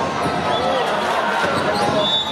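A basketball bouncing on an indoor court, with voices in the arena.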